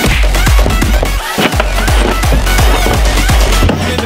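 Fast, loud electronic dance music with a heavy kick drum pounding about three beats a second; the bass and kick drop out briefly about a second in, then come back.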